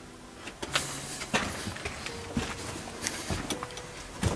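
Footsteps and shoe scuffs going down stone stairs: a few separate, unevenly spaced steps with scraping between them.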